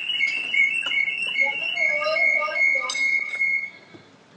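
A high, steady whistling tone pulsing in quick repeats, with faint voices underneath; it cuts off suddenly shortly before the end.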